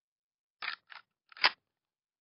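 Uzi submachine gun magazine being worked in and out of the magazine well: two short metallic rattles, then a sharper, louder click about a second and a half in.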